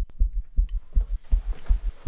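Fast, low heartbeat-like thudding, about four beats a second, used as a tension sound effect in a short film's soundtrack.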